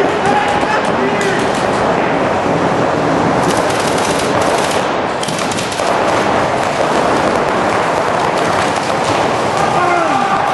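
Many paintball markers firing in rapid strings, the shots blurring into a near-continuous rattle that echoes in a large indoor hall, with voices shouting now and then.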